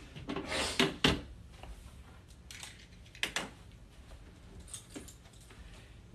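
Scattered knocks, clatters and rustles of household things being handled and put away, a cluster of them in the first second and a few sharper knocks around three seconds in.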